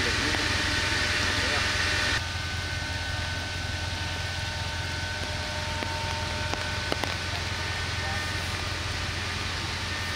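A steady engine running with a constant hum, faint voices in the first couple of seconds and a couple of light knocks about seven seconds in. A cut about two seconds in lowers the level.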